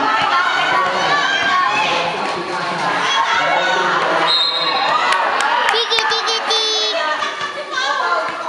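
Children's voices shouting and cheering, many at once, from players and spectators at a youth basketball game. A high steady tone comes a little after the middle, followed by a few sharp knocks.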